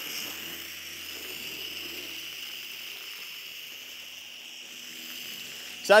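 Foam cannon on a garden hose, running on household hose pressure rather than a pressure washer, spraying soapy protectant onto a car's body panels: a steady hiss of spray spattering on the paint.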